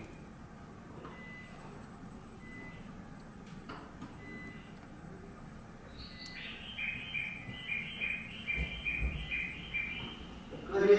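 A bird chirping in a fast, even run of high calls from about six seconds in, over a low outdoor background hum.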